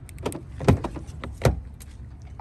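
Front door of a 2020 Ford Expedition being unlatched and swung open: a run of small clicks from the handle and latch, with two louder knocks about two-thirds of a second and a second and a half in.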